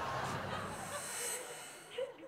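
A transition sound effect played with the show's logo: a hissing sweep that is brightest about a second in and then fades away.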